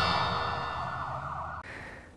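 The dying tail of a TV news programme's logo sting: a held, ringing, siren-like chord fading away steadily and cutting off about a second and a half in.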